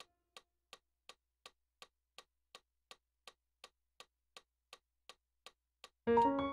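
Faint metronome ticking at a steady tempo of about 165 beats a minute, with no piano notes sounding.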